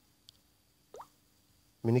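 A faint tap, then a short plop rising quickly in pitch about a second in. A man's voice starts near the end.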